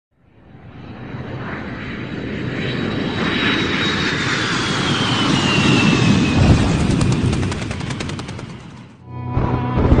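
Cinematic logo sound effect: a rumbling whoosh that swells over several seconds, with a falling whistle through the middle like a jet passing, then fades out about nine seconds in. A music intro starts just after.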